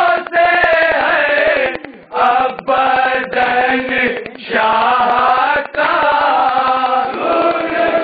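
Men's voices chanting a noha, a Shia lament recited in unison during matam, in sung lines with short breaks about two seconds in and again just past four seconds.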